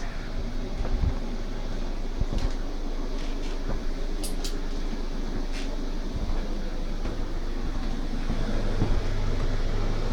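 Steady low mechanical hum and rumble of room background noise, with a few faint clicks.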